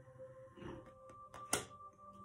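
A single sharp click about one and a half seconds in, a tarot card being set down on the table. Under it sits a faint steady background of held tones.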